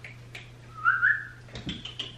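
A person whistles once, a short rising whistle about a second in, calling a dog to come. A few faint clicks come before and after it.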